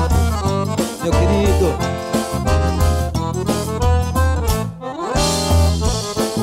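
Forró band playing an instrumental passage: accordion melody over a steady bass-drum beat, with no singing.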